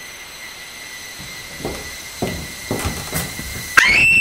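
A faint steady high tone over room noise, then a few soft knocks about half a second apart. Near the end a loud, high-pitched scream breaks out suddenly.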